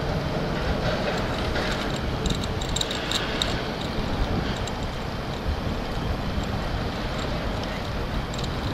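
Bicycle riding over asphalt: steady wind rumble on the microphone and tyre noise, with scattered light rattling clicks.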